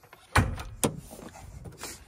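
A cough, then a sharp click as the Land Cruiser's hood release lever is pulled and the hood unlatches, followed by light rustling and another click near the end.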